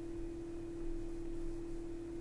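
A steady hum at one unchanging pitch over a faint background hiss.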